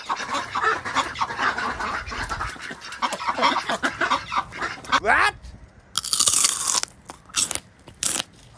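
Mallard hens and a white domestic duck dabbling and pecking through dry fallen leaves: continuous crackling and rustling of leaves, with short duck calls mixed in. A louder rustle comes about six seconds in.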